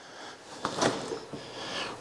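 Refrigerator freezer door being pulled open by hand, with a few soft clicks and rustles a little under a second in.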